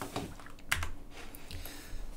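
A few clicks of computer keyboard keys being pressed, the sharpest one a little under a second in.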